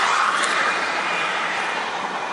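Road noise of a vehicle passing on the highway: a steady rush of tyre noise that slowly fades.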